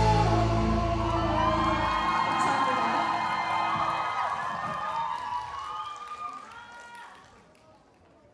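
A rock band's final chord, bass and guitars held, rings out and stops about two seconds in, followed by an audience cheering and whooping, the whole fading away toward the end.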